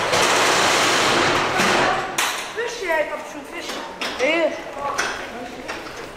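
Street ambience: a loud rushing noise for about the first two seconds, then high-pitched children's voices calling out with sliding pitch, and a few sharp knocks.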